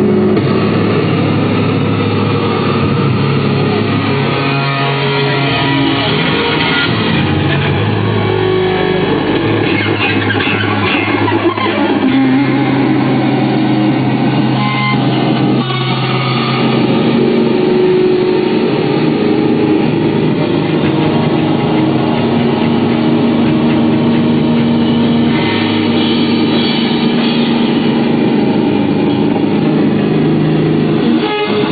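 A live rock band playing loud through a PA: electric guitar, bass guitar and drums, with long held chords and bass notes.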